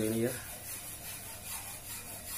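A steady hiss of static from an LCD TV that is tuned to a channel with no signal, following a brief spoken phrase.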